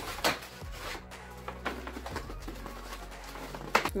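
Stiff brown kraft paper crackling and rustling as it is folded around a board, loudest in the first second, with another sharp crackle near the end, over soft background music.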